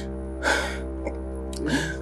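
Sustained background music, with a man's sharp gasping breath about half a second in and another breath near the end. He is crying as he confesses.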